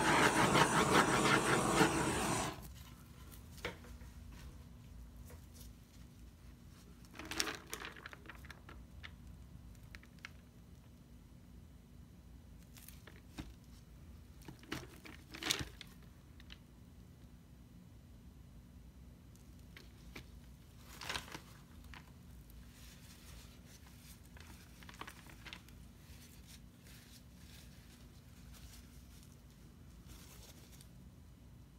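Handheld torch flame hissing over wet acrylic paint for about two and a half seconds, then cut off. After that come a few soft knocks and rustles as the canvas is lifted and tilted by gloved hands, with light paper rustling.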